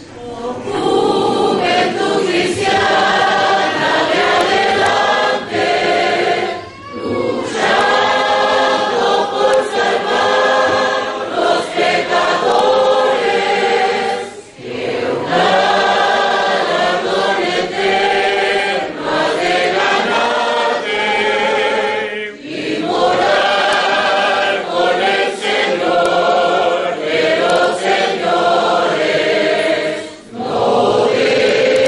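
Church congregation singing a hymn verse together as a large mixed choir. The lines are long, with a brief breath between them about every eight seconds.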